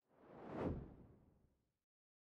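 A single whoosh sound effect that swells and fades within about a second.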